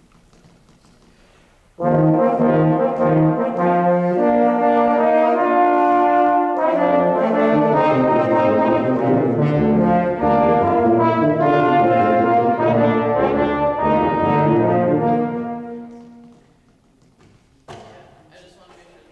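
A wind band playing a brass-heavy passage with sustained chords. The band comes in together about two seconds in and dies away near the end, ringing on in the hall.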